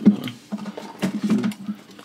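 Light clicks and taps of cardboard slider boxes being handled and shifted on a table, a quick irregular string of small knocks.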